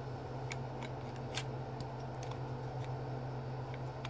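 A few light metallic clicks as a semi-automatic pistol's slide is worked back by hand, the most distinct about one and a half seconds in, over a steady low hum.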